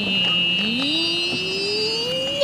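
Golf cart's motor whining as the cart drives. Its pitch dips low near the start and then climbs slowly and evenly, over a steady high-pitched whine.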